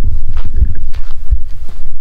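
Wind buffeting the microphone in a loud, uneven rumble, with footsteps on field soil underneath.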